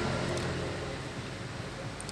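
Steady low mechanical hum over a background hiss, slowly fading.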